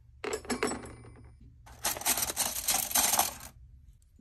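Metal cutlery and metal straws clinking against each other as they are laid into a plastic basket: a short run of clinks in the first second, then a longer, denser stretch of clinking in the second half.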